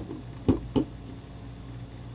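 Two light clicks of the plastic GoPro housing and mount being handled, about half a second in and again a moment later, while a tether loop is worked around the mount's base. A steady low hum runs underneath.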